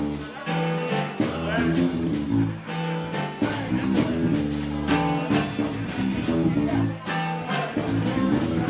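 Live jazz band playing: a saxophone melody over keyboard, a bass guitar line and a drum kit, with a steady beat.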